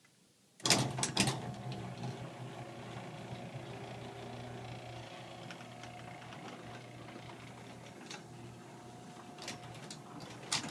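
LiftMaster 1280-chassis belt-drive garage door opener closing the door. It starts about half a second in with a click and a few clunks, then runs with a steady motor hum.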